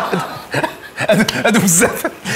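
A man chuckling in short bursts of laughter, mixed with a few spoken sounds.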